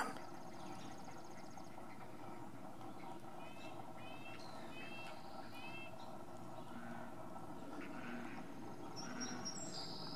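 Wild birds calling: a fast high trill near the start, then four short down-slurred chirps in the middle, and a few more high chirps near the end, over a faint steady background hiss.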